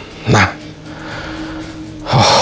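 Background score holding a low sustained drone, with one short, sharp burst about a third of a second in.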